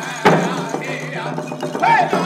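Men singing a Blackfoot chicken dance song in high, wavering voices, with rawhide hand drums struck in a slow beat; one loud drum stroke comes about a quarter second in.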